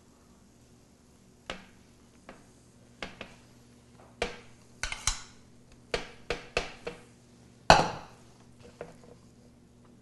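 A metal spoon clinking and scraping against a metal mixing bowl and a metal sheet pan as mashed potatoes are scooped and spread on pizza dough: irregular clinks and knocks, with one louder knock about three-quarters of the way through.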